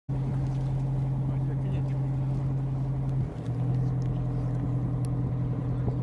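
Boat engine running at a steady pitch, a low even hum that dips briefly and settles a little lower about three seconds in.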